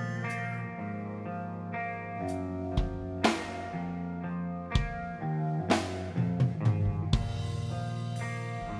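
Electric guitar and drum kit playing live rock: held, ringing guitar chords punctuated by sparse drum and cymbal hits, then a quick drum fill about six to seven seconds in.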